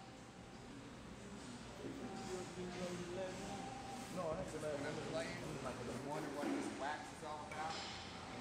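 Indistinct, muffled talking at a low level. The clay bar sliding over the lubricated paint makes almost no sound of its own, because the spray lubricant cuts down the friction.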